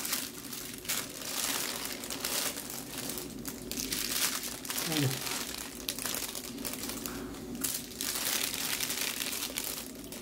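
Thin sheets of pieced kite paper rustling and crinkling in surges as they are lifted, turned over and rolled up by hand.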